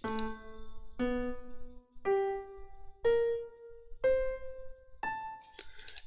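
MuseScore's playback piano sounds six single notes, one per second on the beat, climbing in pitch overall. This is the piece's backbone line placed on the beat.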